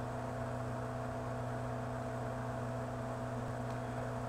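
Steady low electrical hum made of a few fixed tones, with a faint hiss under it and nothing else happening.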